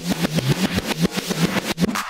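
South African house track from 1990 in a stripped-down drum break: the low bass drone drops out and a rapid, even run of percussive 808-style drum and bass hits plays on its own, each with a short falling pitch.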